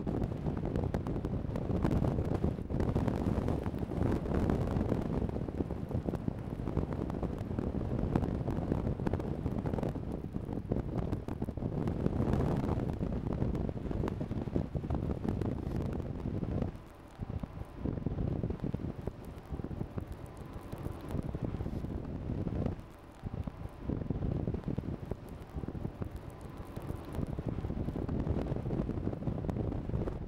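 Wind buffeting the microphone: a rough, gusty low rumble that drops away briefly twice in the second half.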